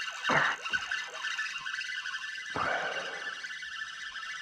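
Electric trolling motor running with a steady, high-pitched whine, joined by a couple of brief louder noises.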